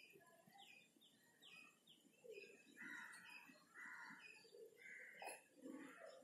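Faint bird chirping: a quick run of short, falling chirps in the first couple of seconds, then a few longer notes.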